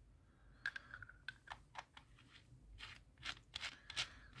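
Faint small clicks and scrapes of a battery being slid into the thermal scope's metal battery tube and its threaded cap being screwed on, about a dozen light ticks with a short squeak about a second in.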